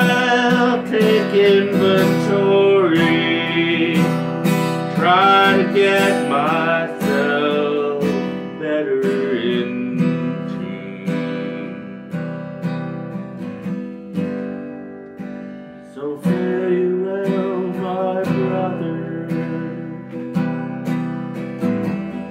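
Harmonica solo over a strummed steel-string acoustic guitar. The harmonica line eases off around the middle, leaving the guitar quieter, then comes back strongly about two thirds of the way through.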